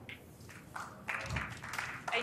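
Snooker audience applauding, coming up about a second in and growing louder.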